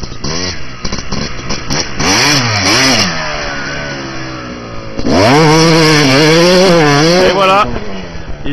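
Dirt bike engine revving: it rises and falls in pitch, dies down, then is held at high, wavering revs for over two seconds before cutting off near the end.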